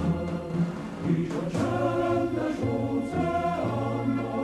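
Music with a choir singing long held notes over a low bass accompaniment, the notes changing about once a second.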